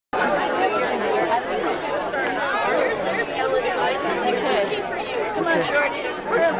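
A crowd of people chattering, many voices talking at once, cutting in suddenly out of silence at the very start.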